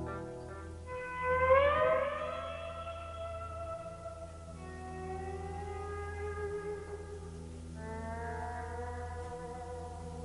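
Solo electric guitar played live: sustained notes, the loudest sliding upward in pitch about a second in. Held chords follow and swell in again twice, over a steady low tone.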